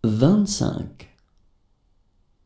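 A voice saying a number in French, followed about a second in by a single sharp click, then near silence.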